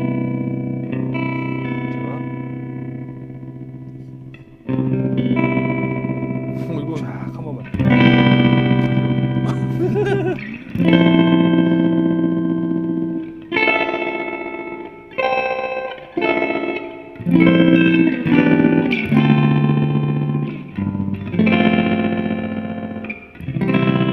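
Fender Stratocaster electric guitar played through a JHS Kodiak tremolo pedal with its mix turned up high, into a Fender '65 Twin Reverb amp. A series of ringing chords, each held a second or more before the next.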